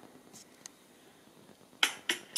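Faint steady hiss, then near the end a sharp, snap-like percussive hit that starts a song's beat of evenly spaced clicks, about three to four a second.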